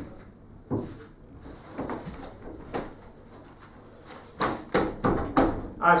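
Sheets of paper being handled and rustled: a few separate rustles at first, then a quicker run of them about four seconds in.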